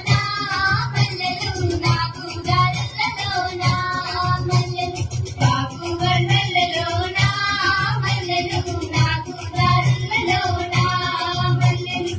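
Telugu folk-style dance song playing: a voice singing a melody over a steady drum beat.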